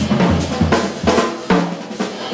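Jazz drum kit played solo: snare, bass drum and cymbal strokes in a busy, uneven pattern over ringing cymbals, with a sharp accented hit about one and a half seconds in.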